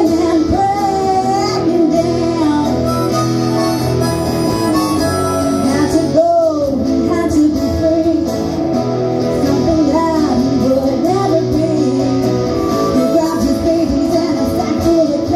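A harmonica played cupped to a microphone alongside a woman singing, over a steady instrumental backing, heard through a PA.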